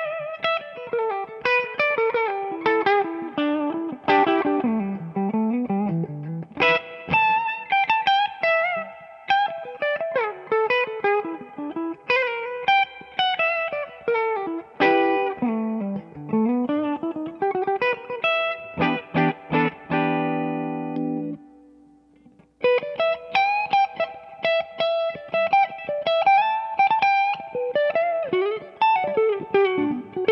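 Josh Williams Mockingbird semi-hollow electric guitar played clean on the bridge pickup through an MH Skytone amp: quick single-note lines high on the neck, with runs sweeping down to the lower strings. The notes have a soft, cushy attack but stay super articulate and clear, not ice-picky. About two-thirds of the way through, a chord rings out and fades, there is a short pause, and then the lines start again.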